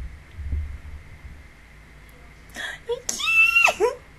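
A woman's high-pitched squeal of delight, held on one pitch and then falling away near the end, with a short breathy sound just before it.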